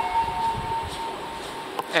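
A steady high tone, with a fainter second tone just below it, like a distant siren or alarm, fading out about a second and a half in, over low rumbling noise.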